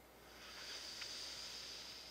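A long breath drawn through one nostril, the other held shut by a finger, during alternate-nostril breathing: a steady hissing rush of air that swells in shortly after the start and carries on past the end.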